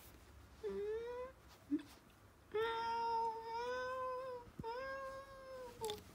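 Domestic cat meowing three times: a short rising meow about a second in, then a long drawn-out meow and a shorter one that falls away at the end.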